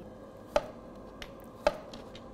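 Kitchen knife slicing vegetables on a wooden cutting board: two sharp knocks about a second apart, with a faint tap between them.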